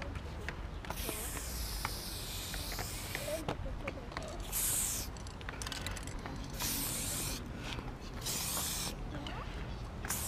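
An aerosol spray paint can spraying against a concrete wall in hissing bursts: one long spray of about two seconds, then three short bursts.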